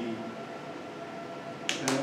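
Quiet room tone with a faint steady hum, then two sharp clicks a fraction of a second apart near the end.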